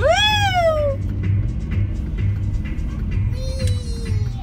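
A long high "wee!" cry in the first second, sliding up and then down in pitch, over pop music from the car radio with a steady beat. A faint short falling call comes near the end.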